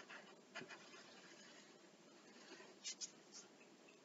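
Faint pencil strokes scratching on paper: a few short scratches, the clearest close together about three seconds in.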